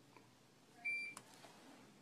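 A single short electronic beep about a second in, followed right after by a sharp click, over faint room tone.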